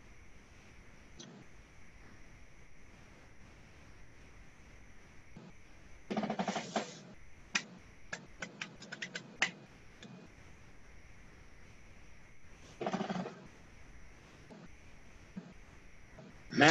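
Faint room tone through a video-call microphone, broken by a quick run of about a dozen clicks. There are also two short pitched sounds, a longer one about six seconds in and a brief one near thirteen seconds.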